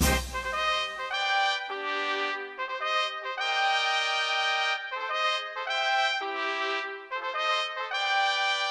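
Instrumental interlude of a school song: a solo brass melody of held notes, with a few short detached notes, alone without choir or bass after the fuller chorus dies away in the first second.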